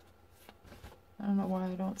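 Wizards Tarot cards being handled and sorted through by hand, faint sliding and flicking of card stock for about the first second. A voice then begins speaking and covers the rest.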